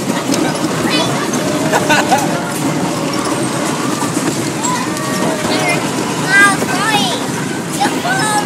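A children's amusement ride running with a steady rumble, with young children's excited shouts and squeals over it, the loudest a high squeal about six seconds in.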